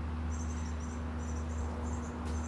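High-pitched insect-like chirping in short repeated pulses, about two a second, over a steady low mechanical hum.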